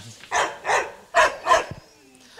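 Rottweiler barking in the kennel: four short barks in two quick pairs.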